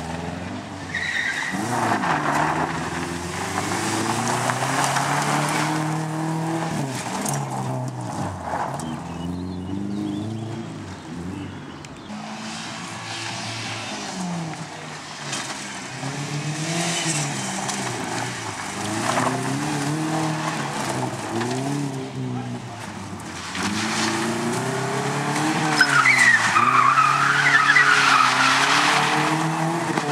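Subaru Impreza rally car's flat-four engine revving hard and dropping back again and again through gear changes as it is driven around a loose-surface stage. Near the end comes the loudest stretch, with tyre squeal over the engine.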